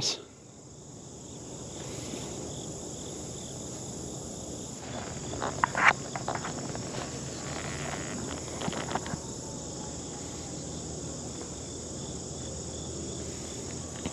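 Steady, high-pitched insect chorus, with a few short crackles and rustles about five to six seconds in and again near nine seconds.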